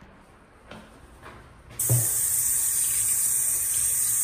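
Sink faucet turned on about two seconds in, then water running steadily into the basin. A few light knocks come before it.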